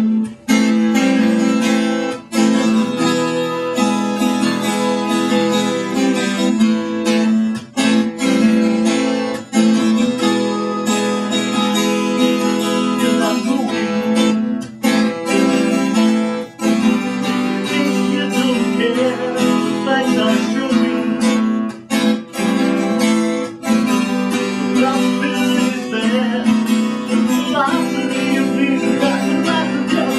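Several acoustic guitars strummed together, playing steady chords.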